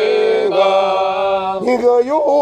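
A congregation sings a Shona hymn unaccompanied, several voices in harmony holding long notes. Near the end the voices move to new notes.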